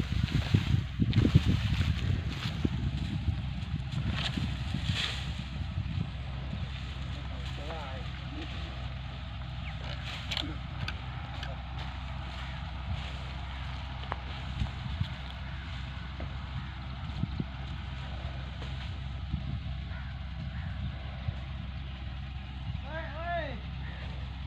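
Tractor diesel engine idling steadily, with loud rustling and knocking in the first few seconds.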